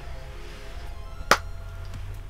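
Quiet background music with faint held tones under a low hum. A single sharp hand clap comes about a second and a quarter in.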